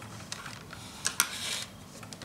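Small clicks and a brief rustle about a second in, from an eye pencil being handled and readied before use.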